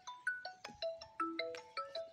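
Mobile phone ringtone playing a melody of short chiming notes, about four a second.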